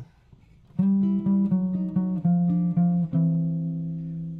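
Electric archtop guitar played fingerstyle through an amp: a blues turnaround lick around a C chord, starting about a second in as a quick run of plucked notes over a held low note, then settling on a ringing chord.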